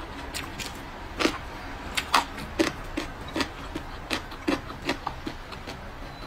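Close-miked mouth sounds of someone chewing food: a run of sharp, wet chewing smacks, about two or three a second, starting about a second in.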